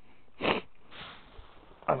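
A man sniffing once, sharply, about half a second in, followed by a softer breath.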